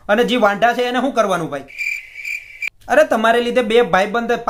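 Cricket chirping sound effect: a steady, pulsing high-pitched trill lasting about a second, which cuts off suddenly.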